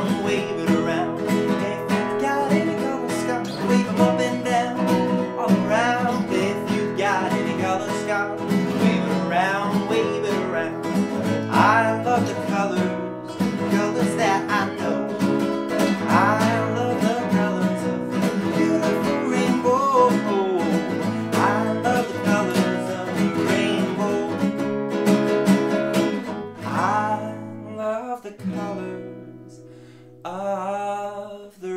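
Nylon-string classical guitar strummed in a lively rhythm, with a man's voice singing along. The playing thins out and grows quieter over the last few seconds.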